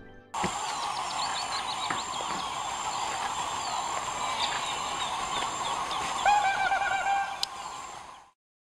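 Wetland nature ambience: many birds chirping over a dense, steady chorus, with a louder, repeated chattering call about six seconds in.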